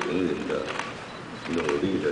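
Speech: a man giving a formal address in Mandarin.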